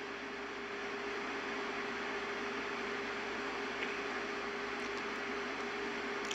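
Steady background hiss with a faint, steady hum tone running under it.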